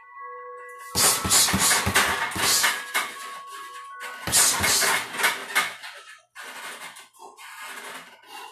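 Background music with held notes, broken by two big crashing hits about a second in and about four seconds in, each fading away over a second or two.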